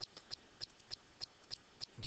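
Computer mouse clicking at a steady pace, about three short, sharp clicks a second.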